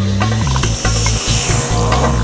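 Electronic trance music with a steady, stepping bass line and sharp clicking percussion.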